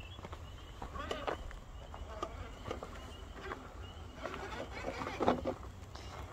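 Faint sound of a 1:10 scale RC4WD Gelande 2 crawler driving over rock: short faint gliding motor whine, with scattered clicks of tyres and loose stones on the rock.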